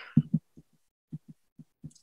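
Stylus writing on a tablet, picked up as soft, low, irregular thuds, about eight of them, as the pen strokes and taps the screen. A short breath comes at the start.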